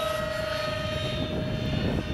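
Twin 70 mm electric ducted fans of a radio-controlled A-10 model jet whining steadily at one pitch in flight, over a low rumble; the main tone fades a little near the end.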